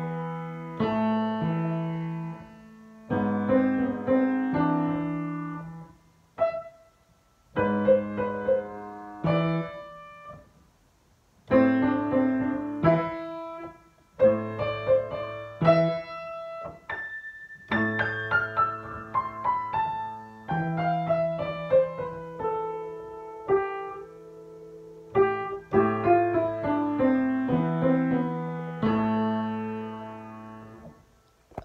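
Solo piano playing a short piece in quick phrases, with brief pauses between them and a long run of falling notes about two-thirds of the way through.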